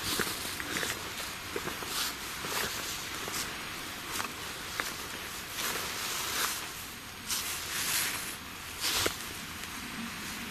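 Footsteps through ferns and undergrowth, with leaves and stems brushing at each step, an irregular step every half second to a second over a steady hiss.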